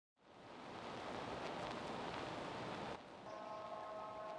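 Steady hiss of background noise that drops off about three seconds in, followed by a faint steady whine made of several tones.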